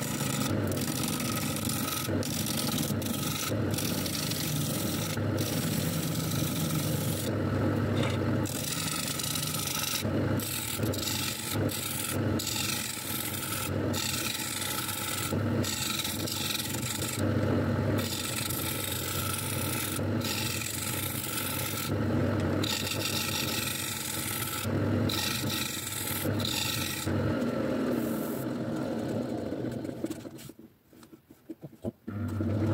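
A gouge cutting the face of a large spinning glued-up blank of ash, mahogany and walnut on a wood lathe: a continuous rasping cut over the lathe's steady motor hum. The cut breaks off briefly many times as the tool lifts from the wood.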